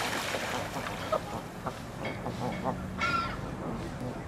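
Canada geese calling close by: a few short, soft calls, then a louder honk about three seconds in, over a steady background rush of water.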